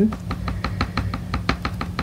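Rapid light taps of a paint-loaded craft sponge being dabbed against a painted wooden cutout, about eight a second.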